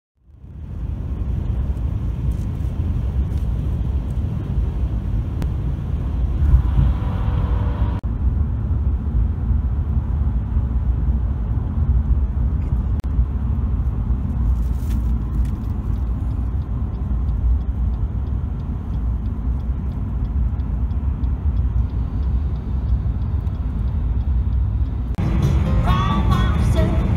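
Road noise inside a moving car's cabin: a steady low rumble of tyres and engine at highway speed. A brief pitched sound comes in about seven seconds in, and louder pitched sounds, possibly music, start near the end.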